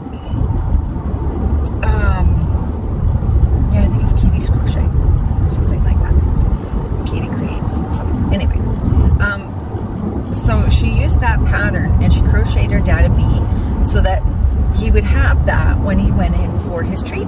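Steady low road and engine rumble of a moving car, heard from inside the cabin, with short voice-like sounds over it now and then.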